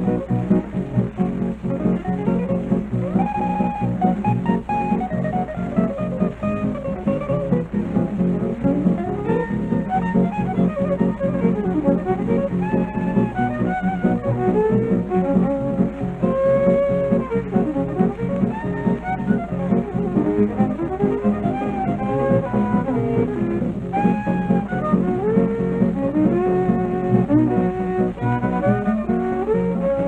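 Instrumental break with no singing in a 1941 western swing-style country record played by fiddle, acoustic guitar and electric guitar: a lead melody line with bent notes over steady rhythm accompaniment.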